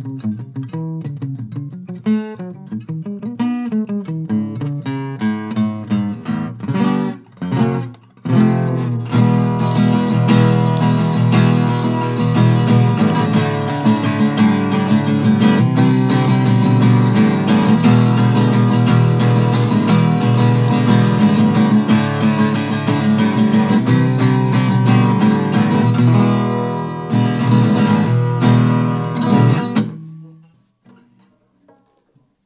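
Vintage Fender Newporter acoustic guitar being played: separate picked notes for the first several seconds, a short break about eight seconds in, then steady strummed chords for the rest.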